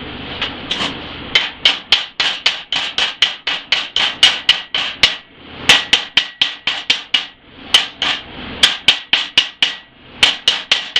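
Chipping hammer striking steel plate in quick, sharp metallic blows, about three to four a second with a brief pause about five seconds in. The hammer is knocking slag off freshly welded stick (SMAW) tack welds.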